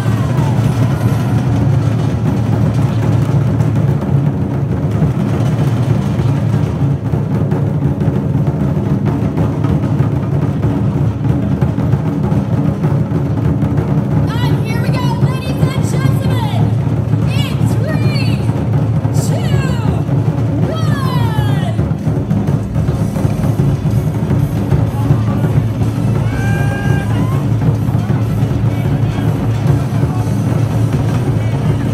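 Ensemble drumming: large Chinese barrel drums beaten with sticks together with Malay hand drums, a dense, continuous pounding that does not pause. The drumming is the auspicious drum-beating that opens the venue, kept going without stopping for luck and prosperity.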